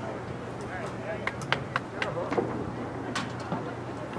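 Distant voices of lacrosse players and spectators calling out across the field, over a steady low hum. A quick run of sharp clacks comes between about one and two seconds in, with one more about three seconds in.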